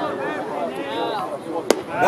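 A single sharp crack of a metal baseball bat hitting the pitched ball, near the end, over crowd chatter.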